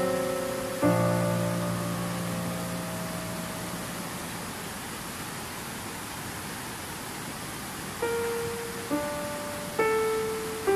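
Slow, sparse piano music over a steady rush of river water. A note is struck about a second in and rings out for several seconds, leaving only the water, then three single notes follow one after another in the last two seconds, each fading away.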